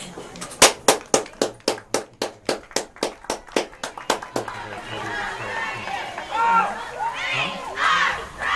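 A run of rapid hand claps close to the microphone, about five a second for nearly four seconds, loudest at first and fading. After them come raised voices of spectators shouting and cheering.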